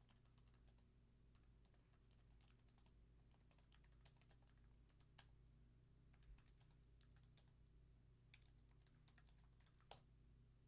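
Faint computer keyboard typing: irregular soft key clicks, in short runs, over a low steady hum.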